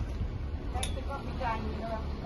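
Low rumble of a motor yacht's engines running at low speed while it manoeuvres close by, with faint distant voices and a single click.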